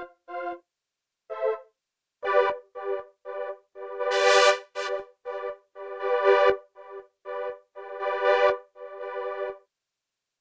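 Rob Papen Predator 3 software synthesizer playing a preset as a phrase of short, separate keyboard-like notes with brief gaps between them. One note about four seconds in carries a bright hiss on top. The playing stops shortly before the end.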